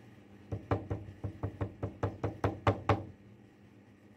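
About a dozen quick, light knocks, roughly five a second and loudest near the end, from hands working the sliding stop and its small metal fitting on a drilling jig.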